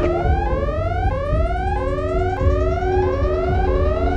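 Electronic alert-siren sound effect: a rising whoop tone repeated about every two-thirds of a second, over a low droning music bed.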